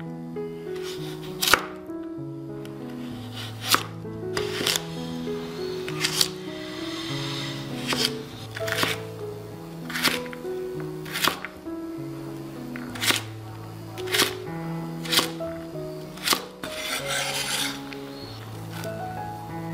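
Chef's knife chopping carrot into dice on a bamboo cutting board: sharp knocks of the blade hitting the board, about one a second at uneven spacing, with a couple of longer rasping scrapes. Background music plays under it.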